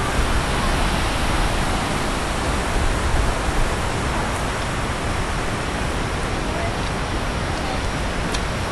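Steady rushing of a fast-flowing, muddy stream, with a low rumble underneath.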